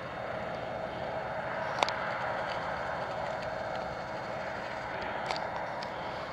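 A distant train crossing a long stone railway viaduct: a steady, even rumble, with two light clicks.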